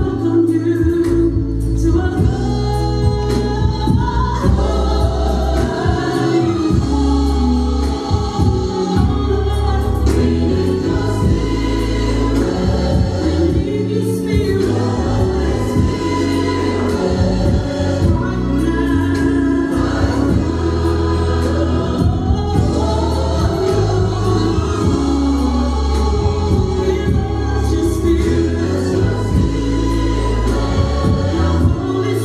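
Gospel music: a choir singing over bass and a steady beat.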